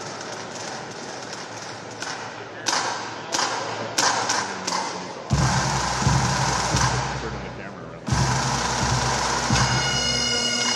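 Crowd chatter in a large hall, then a few sharp drum beats, and a pipe band's bagpipe drones coming in about five seconds in, low and steady with drum beats under them, as the band strikes up.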